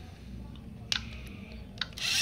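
Two short clicks, one about a second in and one near the end, as a finger presses the buttons of a Lego Mindstorms EV3 brick to start its program. A low hum runs underneath.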